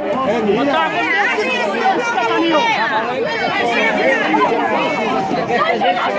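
Many voices talking over one another at once: dense crowd chatter with no single voice standing out.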